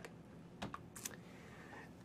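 Two faint computer keyboard key clicks, about half a second apart, over low room tone.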